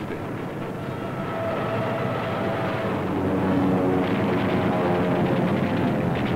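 Aircraft engine drone on an old newsreel soundtrack, mixed with orchestral music whose chords shift partway through, the whole growing steadily louder.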